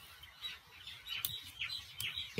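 Faint, short high chirps of birds in the background during a pause in speech, with a few scattered calls.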